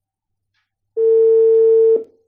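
Telephone ringback tone: one steady mid-pitched tone about a second long, starting about a second in. It is the line ringing while a call waits to be answered.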